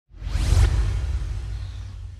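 An edited-in transition sound effect: a whoosh with a deep bass boom that swells about half a second in and then fades away slowly.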